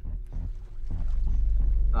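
Low rumbling drone from a horror film trailer's soundtrack, growing louder over the two seconds.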